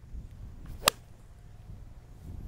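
A 9-iron striking a golf ball off the tee: one sharp click a little under a second in.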